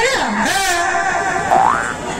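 Comic cartoon-style sound effects: a quick falling pitch glide at the start, then a short rising whistle-like glide near the end.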